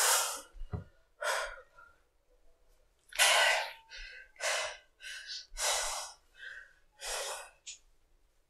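A person making a run of short, breathy, unvoiced sounds, about ten bursts of breath or whisper at irregular spacing, the strongest about three seconds in.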